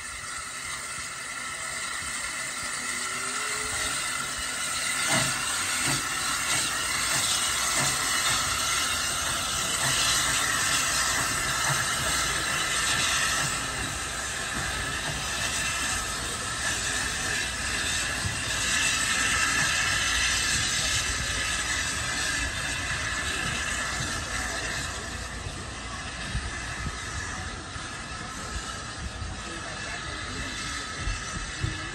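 South Eastern and Chatham Railway O1 0-6-0 steam locomotive pulling away, with a steady hiss of steam over a low rumble. The sound builds over the first few seconds, stays loud for a while, then eases as the locomotive draws off.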